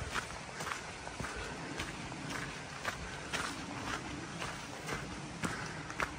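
A hiker's footsteps on a dirt forest trail, walking briskly at about two steps a second.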